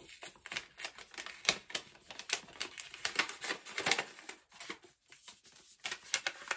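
Irregular sharp taps and clicks with some paper rustling as a paper-wrapped gift box is set on a table and handled.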